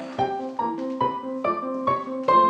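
Piano music, single notes struck at a steady pace of about two to three a second over sustained lower notes.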